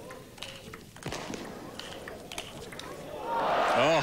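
A table tennis rally: a quick series of sharp clicks as the ball is struck with the bats and bounces on the table. About three seconds in, the crowd breaks into applause and cheering as the point is won, with a man's voice calling out near the end.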